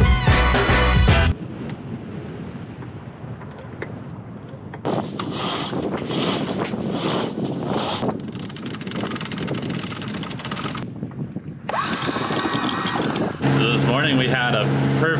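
Intro music ends about a second in. Then wind buffets the microphone on a sailboat's deck, with several louder gusts. A steady motor hum begins near the end.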